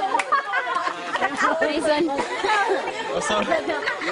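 Several people talking and calling out over one another: lively group chatter, with a few faint sharp clicks.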